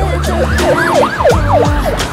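Police car sirens wailing in quick rising and falling sweeps, several overlapping, over the song's steady bass.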